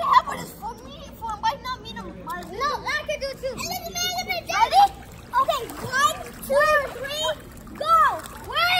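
Children's high-pitched voices calling out in short rising-and-falling cries, with water splashing as they play in a swimming pool.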